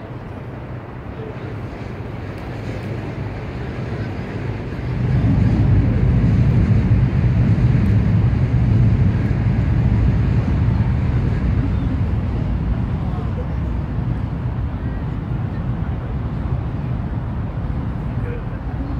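A low rumble that builds, swells sharply about five seconds in, then slowly eases, over outdoor city ambience.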